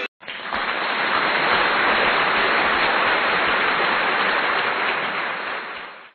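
Studio audience applauding. The applause starts suddenly just after the start and fades away near the end.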